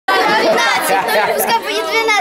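Several young girls talking at once in loud, overlapping chatter.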